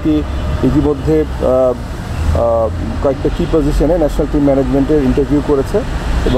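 A man speaking Bengali in continuous speech into microphones, with a steady low rumble underneath.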